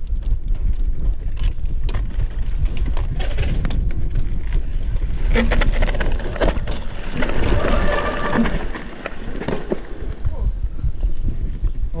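A cross-country mountain bike rolling down a wooden-slatted ramp and onto a rocky dirt trail, its chain and frame rattling and clicking with many sharp knocks over the bumps. A heavy low rumble of wind buffets the handlebar-mounted microphone.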